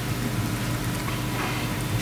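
Steady hiss with a low hum from the lecture-hall microphone feed, with a few faint clicks of a laptop keyboard as a command is typed.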